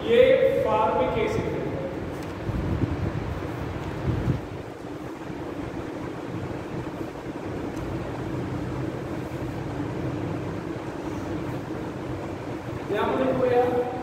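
A man speaking briefly at the start and again near the end, with a steady background hum of room noise in between.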